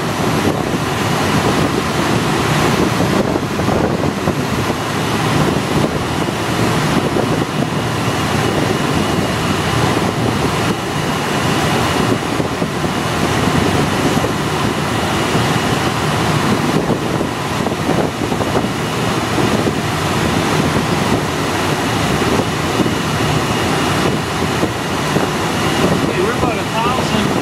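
Steady loud rush of air over a glider in flight, an even noise that does not let up.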